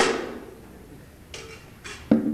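A sharp knock that rings out briefly, then two fainter clicks near the end.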